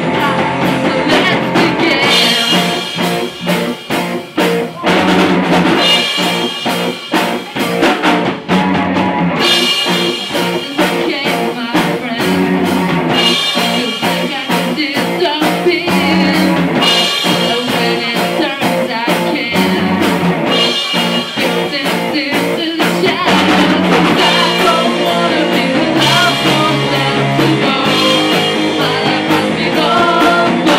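Live rock band playing a song: electric guitar, bass guitar and drum kit with a singer, the drums keeping a steady beat.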